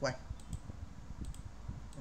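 Computer mouse clicking several times, single sharp clicks spread through a couple of seconds as checkboxes are ticked one after another.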